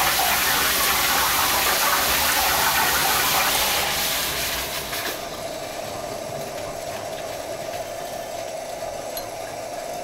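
Water flowing through the preaction sprinkler system's piping, a loud steady hiss that drops away about four to five seconds in as the control valve is closed and the flow is shut off. What remains is a fainter steady hiss with a light hum.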